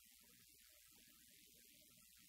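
Near silence: faint hiss and low hum.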